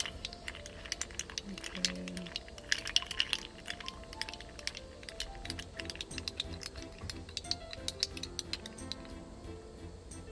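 Background music with a slow melody, over frequent irregular clinks of ice cubes against a glass as a drink on the rocks is stirred with a plastic stirrer.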